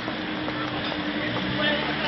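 Busy street ambience: a crowd of pedestrians walking and talking, with a steady hum underneath.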